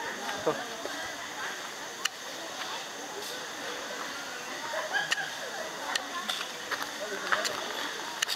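Faint outdoor background of distant people's voices, with a few light clicks and taps.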